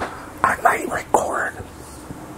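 A man saying a few soft, whispery words close to the microphone, about half a second in and lasting about a second.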